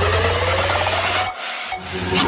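Big room electro house build-up: a rising synth sweep and hissing noise riser over held bass, with the music dropping out briefly about a second and a half in, just before the drop.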